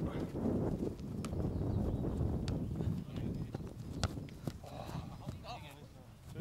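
Wind buffeting the microphone on an open football pitch, with a few scattered sharp knocks and short distant shouts from players near the end.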